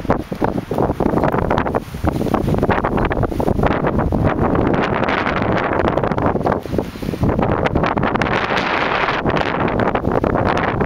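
Wind buffeting the camera microphone: a loud, uneven rushing rumble that surges and dips throughout.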